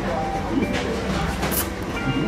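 Restaurant room sound: a steady low hum with background music and voices, and two short clicks, one near the middle and one about three-quarters of the way through.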